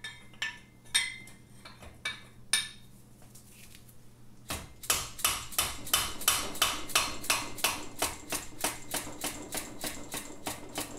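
A few scattered metal tool clinks, then, from about four and a half seconds in, a hammer tapping steadily at about three blows a second on a C-spanner. The spanner is hooked around the Norton Commando's finned exhaust nut to work the nut loose from the cylinder head.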